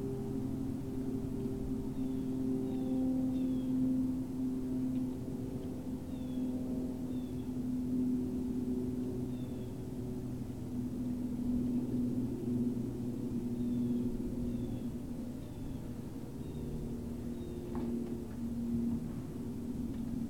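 A steady low drone made of several held tones, with faint short high chirps now and then.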